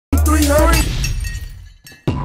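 Production-logo sound effect: a sudden loud bass hit with a wavering, voice-like tone and a crash over it, fading away over about a second and a half.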